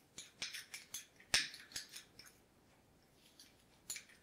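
A lemon being zested by hand: a quick run of short scraping strokes of a zester against the peel, which stop a little after two seconds in.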